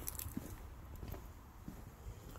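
A few faint soft footsteps over a low outdoor background rumble.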